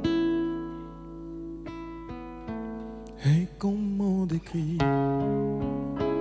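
Nylon-string classical guitar played live, picked notes and chords ringing out over one another. A short wordless vocal phrase rises over the guitar about three seconds in.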